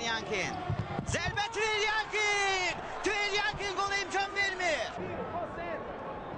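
Men's voices shouting and calling out in an indoor futsal arena as a kick from the penalty mark is taken.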